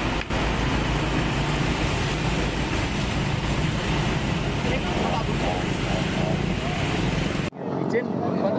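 Roadside noise: a steady low rumble and hiss, likely from vehicles, with indistinct voices of onlookers. It cuts off suddenly near the end.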